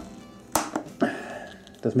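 Side cutters being set on a nylon cable tie against a hard plastic gun case: a sharp click about half a second in and a lighter click just after, then a faint, steady ringing tone.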